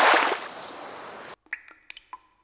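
Water sound effect: a loud rush of splashing water at the start that fades, then cuts off suddenly, followed by a few short ringing water drips.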